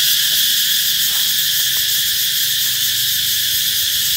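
Cicadas singing: a loud, steady, unbroken high-pitched buzz.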